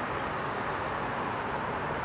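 Steady ambient background noise: an even rumble and hiss with no distinct events.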